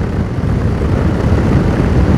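Yamaha Tracer 7's CP2 parallel-twin engine running at road speed under heavy wind rush on the microphone, a steady low rumble with no distinct engine note.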